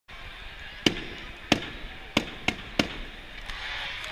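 Five sharp, echoing bangs in the two-slow, three-quick beat of the familiar arena clap, over the steady din of a hockey crowd, which swells slightly near the end.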